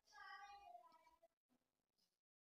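Near silence, with a faint high-pitched call that falls in pitch and fades out within the first second.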